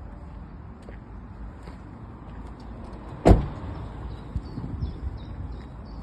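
Mercedes Sprinter van's cab door shut with a single loud thud about three seconds in, with a few small clicks of handling around it.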